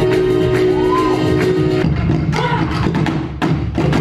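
Live stage music: held notes over a light beat for about the first two seconds, then the held notes stop and stick drumming on drums takes over.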